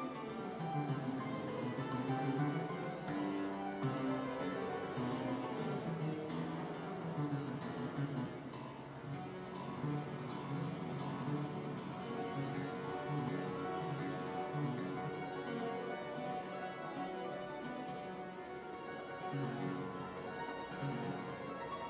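A clavichord being played: a continuous classical keyboard piece with a steady flow of plucked-sounding notes.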